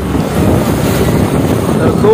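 Wind buffeting the microphone of a camera on a moving motorcycle: a loud, uneven rush with no clear tone.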